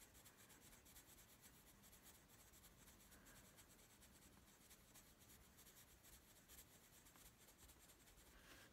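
Faint coloured-pencil strokes scratching on toned sketch paper, barely above room tone.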